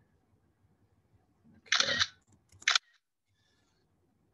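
A single short, sharp click of a computer mouse, just after a spoken 'Okay', over faint room tone.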